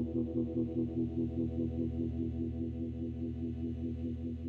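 Closing bars of an indie rock track: a held electric guitar chord with chorus and distortion effects, pulsing fast and evenly, slowly fading out.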